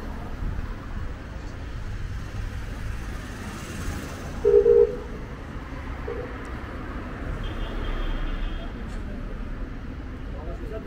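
Street traffic ambience with a steady low rumble, and a short car horn beep about four and a half seconds in.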